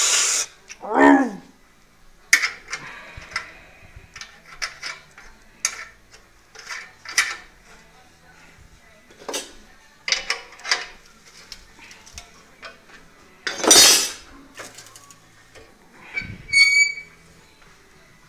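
Scattered light metallic clinks and knocks from steel workshop parts being handled, with quiet gaps between them. A brief falling tone comes about a second in, a louder rush of noise near the end, and a short high squeak shortly after it.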